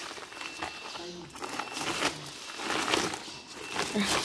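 Thin plastic liner bag crinkling and rustling in irregular bursts as hands pull it open.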